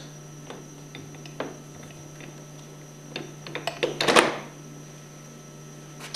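A brass plunger pump head is slid over the ceramic plungers and seated against the crankcase of a Hypro 2400 Series pump. It gives scattered light clicks and then a cluster of metal knocks about three to four seconds in, the loudest just after four seconds. A steady low hum runs underneath.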